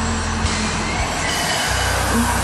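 Live band music: a low bass note is held, then moves to a lower note near the end.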